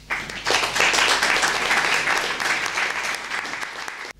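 Audience applauding, starting suddenly right after a speaker's closing "thank you".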